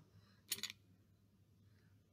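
Near silence: quiet room tone, broken once about half a second in by a brief soft hiss-like sound.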